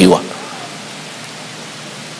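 A steady, even hiss of background noise in a pause between a man's sentences. His last word trails off just at the start.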